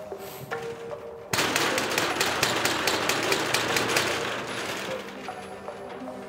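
Fist banging on a steel roller shutter door: a quick run of loud metal bangs, several a second, starting about a second in and dying away after about three to four seconds.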